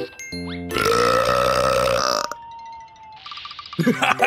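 A cartoon character's long, loud burp lasting about a second and a half, followed by a faint falling tone. The character starts laughing in short bursts near the end.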